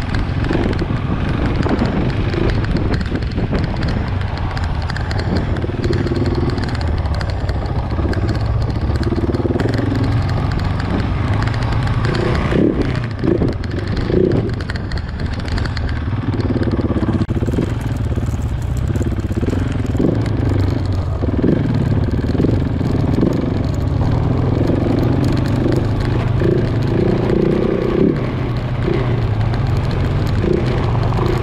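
Motorcycle engine running at low speed on a snowy gravel track, the throttle opening and closing every second or two, with wind noise on the microphone. A few sharp knocks come about halfway through.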